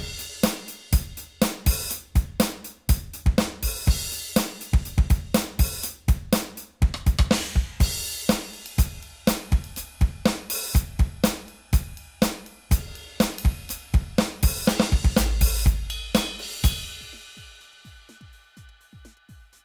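Roland FA-08 workstation playing its drum-kit preview phrase: a SuperNATURAL drum kit with kick, snare, hi-hat and cymbals in a steady groove. The groove stops about a second before the end and rings out.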